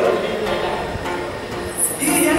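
A steady sustained drone, the shruti of a Yakshagana ensemble, with a few faint drum strokes in the quieter stretch between spoken lines, and a short hiss near the end.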